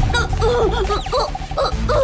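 A quick run of short, high, dog-like yelps, several a second, over background music.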